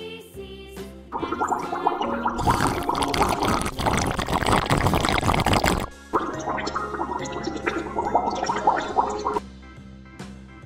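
Cheerful background music with an underwater bubbling sound effect laid over it, loudest from about two to six seconds in.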